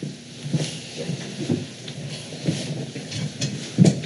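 A room of people sitting back down: chairs shifting and knocking amid rustling and shuffling, with scattered short thumps and one louder thump near the end.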